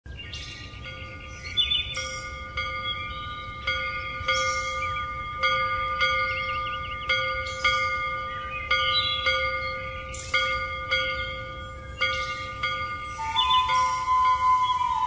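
Bells struck in a steady sequence, most strikes about half a second apart, each ringing on under the next, with a few brighter shimmering hits in between: a bell-chime music intro.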